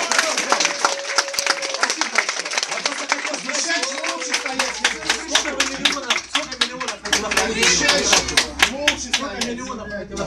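A small crowd clapping hands in a room, with voices talking over the applause. The clapping thins out about six seconds in, picks up again and tapers off near the end.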